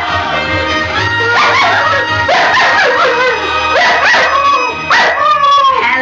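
A flat-coated retriever howling along to TV theme music, a run of rising-and-falling howls over the tune. The theme tune is what sets him off; the owner thinks a pitch or the trumpets in it may be the trigger.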